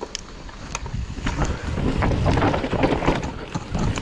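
Mountain bike riding down a rough dirt singletrack: tyre rumble and crunch on dirt with the frame and drivetrain rattling over bumps, getting louder as the bike picks up speed.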